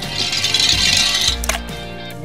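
Background music over a loud hiss lasting about a second and a half, then a sharp click: a small toy fire truck sliding down a wet plastic slide into a paddling pool of water.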